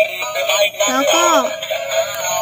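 Electronic children's song with a synthetic singing voice, playing from a battery-operated dancing apple toy, with a woman speaking briefly about a second in.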